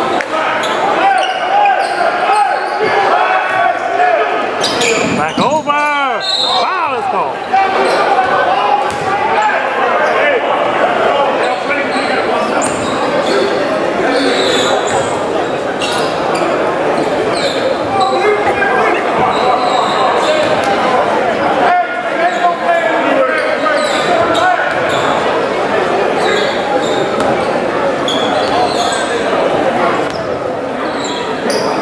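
Basketball gym ambience: many voices of players and spectators talking and calling out, echoing in a large hall, with a basketball bouncing on the hardwood floor at intervals. About six seconds in, one voice rises above the rest in a long, wavering call.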